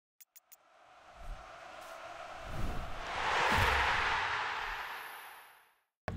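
Intro sound effect: three quick ticks, then a whooshing swell that builds for about three seconds, with a couple of deep thuds near its peak, and fades away just before the end.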